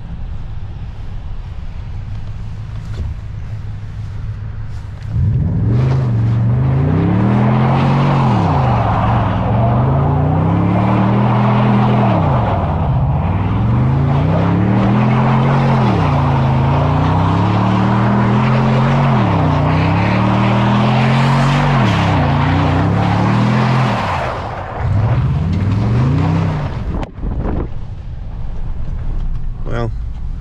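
Car engine revving up and down over and over, a rise and fall every two to three seconds, with a steady hiss of tyres spinning on snow as the car is driven in donuts. The revving starts about five seconds in and stops a few seconds before the end.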